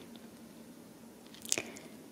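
Faint room tone with one short, sharp mouth click, a lip smack, about one and a half seconds in.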